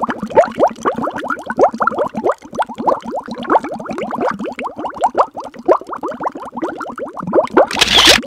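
Rapid stream of short falling bloop tones, several a second, like an underwater bubbling sound effect. A brief burst of hiss comes just before the end.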